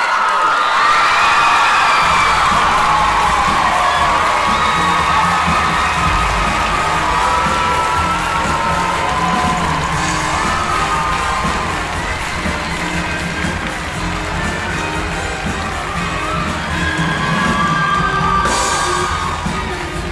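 A large theatre audience of teenagers cheering, screaming and whooping, with a band playing music underneath; the bass of the music comes in about two seconds in and runs beneath the cheering.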